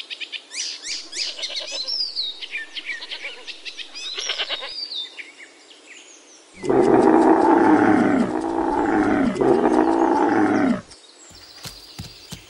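Small birds chirping in quick, high, falling notes, then, about six and a half seconds in, a goat bleating loudly in one long call of about four seconds, broken briefly near the end.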